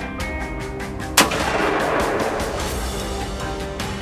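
A single deer rifle shot about a second in, a sharp crack followed by a long echoing decay, over background music with a steady ticking beat.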